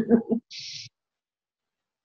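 The tail of a man's laughter, a short breathy hiss about half a second in, then dead silence with no background noise at all.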